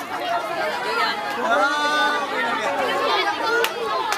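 A group of teenagers talking over one another: steady, overlapping crowd chatter.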